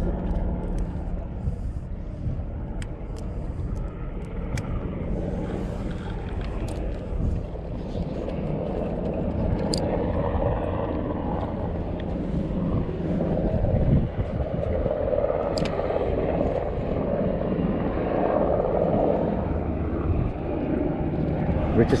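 Steady low rumble with a few faint clicks scattered through it.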